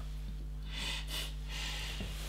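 A steady low electrical hum, with a few soft hissing rustles about a second in.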